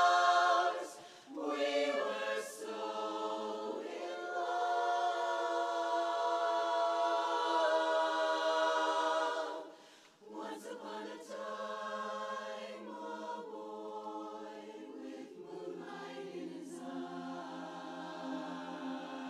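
Women's barbershop chorus singing a cappella in close harmony, holding sustained chords. The sound breaks off briefly about a second in and again about halfway through, and the singing is softer after the second break.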